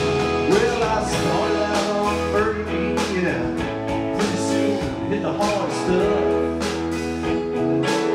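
A live band playing a blues-rock song: drums keeping a steady beat under a bass line and sustained keyboard chords from a Nord Stage 3, with a lead line that bends up and down in pitch.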